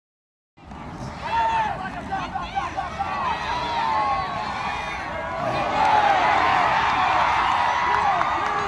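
Spectators in the stands yelling and cheering as a ball carrier breaks a big run, starting about half a second in with many overlapping shouts and swelling into a louder, steadier cheer about six seconds in.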